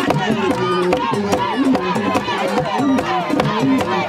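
Vodou ceremonial music: many voices singing together over steady, sharp percussion strokes several times a second.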